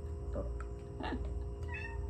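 A cat meowing three times in short calls, the last one higher-pitched, over a steady hum.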